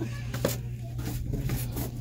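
Foam board sheets being handled and pulled from a cardboard display box, with a sharp knock about half a second in. Faint background music and a steady low hum run underneath.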